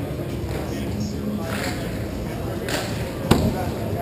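General noise of hockey play on an indoor rink, with distant players' voices, and a single sharp crack of a stick or puck impact a little over three seconds in, the loudest sound.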